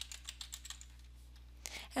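Typing on a computer keyboard: a quick run of soft keystrokes in the first second, then a pause.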